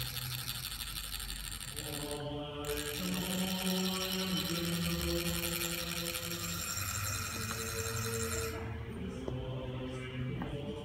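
Deep, low chanting voices holding long notes and shifting pitch a few times, typical of Tibetan Buddhist monastic chant.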